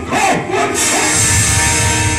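Loud live jatra stage music through the hall's speakers. A voice cries out in the first half-second, then the music carries on as a steady wash with a heavy low beat.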